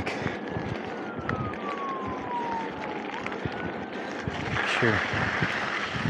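A distant siren wailing, its pitch falling slowly for about three seconds before sweeping back up, over steady background noise. A louder rushing hiss comes in near the end.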